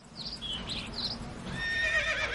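Village-scene sound effects: a horse whinnying in a long, quavering call that starts about one and a half seconds in. Before it come a few short high chirps over a steady background of ambient noise.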